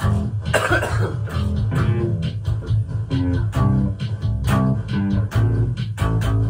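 Live instrumental jam: a pulsing bass line under a running pattern of short, plucked-sounding melodic notes in a steady rhythm. A brief noisy burst comes about half a second in.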